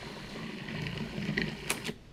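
Food processor motor running steadily, mixing flour and ice water into a flatbread dough. A couple of clicks near the end.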